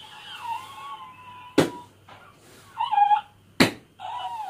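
High-pitched whining cries: one held for about a second and a half, then a shorter one near the end, with two sharp slaps in between.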